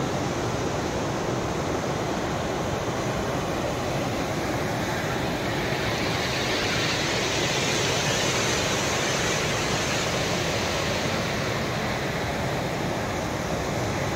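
Steady rushing of a fast mountain river running over rocks in white-water rapids, swelling slightly in the middle.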